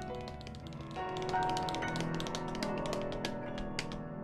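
Piano playing held notes under quick, crisp tap-shoe taps, several a second: piano and tap dance played together.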